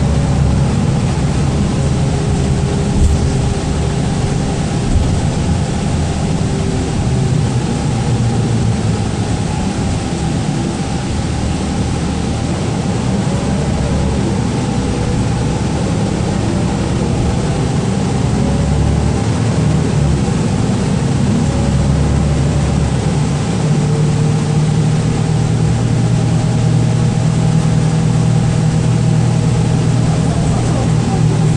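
Interior running noise of a 2012 Gillig Low Floor 40-foot transit bus on the move: a steady drone of engine and road noise, with a couple of light knocks early on. The deeper engine note grows stronger about three-quarters of the way through.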